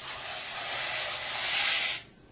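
A steady hiss at the stove, strongest in the highs, lasting about two and a half seconds and cutting off suddenly near the end.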